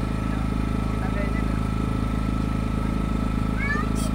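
Small motorboat's engine running steadily: an even low drone with a thin steady whine above it.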